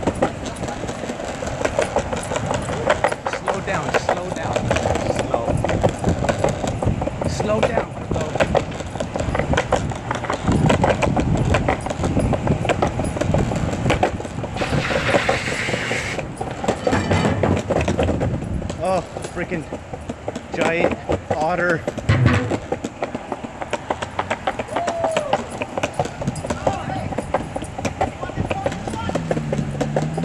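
People talking in the background, mixed with many short clicks and knocks, and a brief hissing rush about halfway through.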